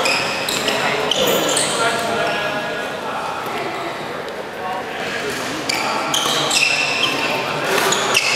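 Badminton rally on a sports-hall court: sharp racket-on-shuttlecock hits and shoes squeaking on the floor, in a reverberant hall. The hits and squeaks thin out midway while voices carry in the hall, then pick up again as the next rally starts.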